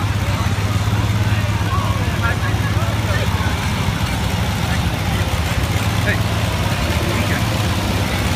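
Vintage tractor engine running slowly at a low, steady drone as it drives past close by, with people talking in the crowd.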